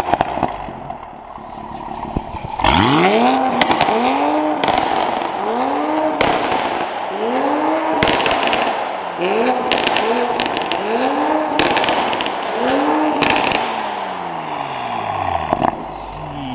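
Toyota Supra A90's turbocharged 3.0-litre inline-six revved hard through a Fi Exhaust valvetronic system with the valves fully open (sport mode). After a short idle it runs through a quick series of throttle blips, about one a second, each climbing and falling in pitch, with crackles and pops between them.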